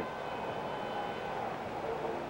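Steady background hiss with faint, distant voices in it.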